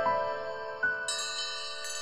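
Logo jingle of bright chime-like bell tones, several notes ringing on together and slowly dying away, with a fresh struck note near the middle and a high shimmer of bell tones joining just after.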